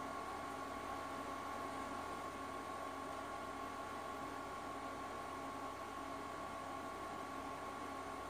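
Faint steady hiss and hum with a thin constant whine: an Acer TravelMate 5720 laptop's cooling fan and drive running while Windows 10 loads after a restart.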